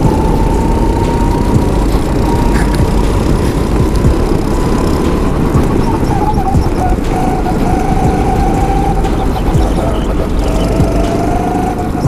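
Go-kart engine running at speed, its pitch climbing slowly, dropping about six seconds in as the kart slows, then climbing again near the end. A dense low rush of wind on the microphone runs under it.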